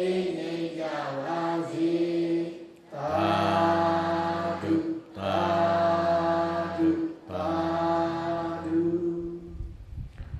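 Buddhist chanting by a male voice through a public-address microphone: four long, sustained, melodic phrases with short breaths between them.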